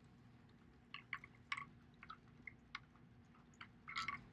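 Near silence: quiet room tone with a few faint, short clicks scattered through it, mostly about a second in and again near the end.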